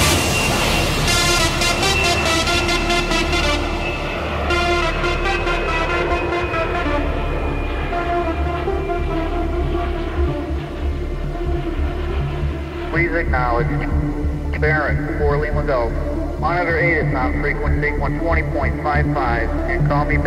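Hard trance music with a steady bass beat and sustained synth pads. From about two-thirds of the way in, a sampled voice in the thin, band-limited sound of a radio transmission talks over the music, like pilot radio chatter.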